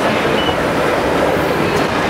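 Escalator running: a steady mechanical rumble that holds at an even level.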